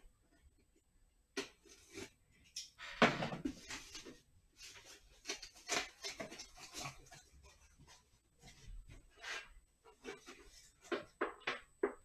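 A cardboard box being slit along its tape with a utility knife, then its flaps pulled open and plastic-wrapped contents rustled as they are lifted out. The noises are irregular scrapes and crackles, loudest about three seconds in.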